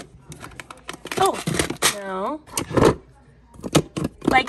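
Metal hand tools clicking and clattering against each other and the plastic tray as a hand rummages through a toolbox, in a series of short, irregular knocks.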